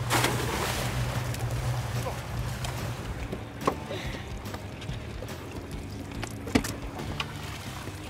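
A stone crab trap splashing into the water, fading over about a second, over a low steady boat hum; later a couple of sharp knocks as the next trap is hooked by its buoy and hauled up onto the boat.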